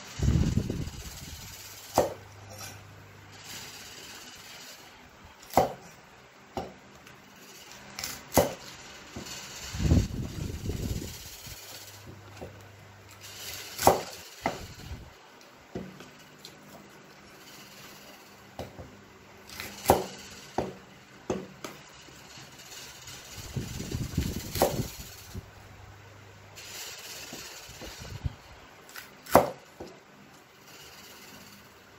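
A cleaver chopping bok choy stems on a wooden chopping block: sharp knocks of the blade on the wood every second or two, at an irregular pace. There are a few low thuds in between.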